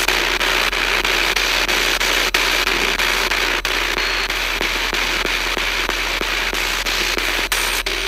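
A spirit box, a radio scanner sweeping the AM band in reverse: loud, continuous static chopped by rapid clicks as it steps from station to station, over a steady low hum.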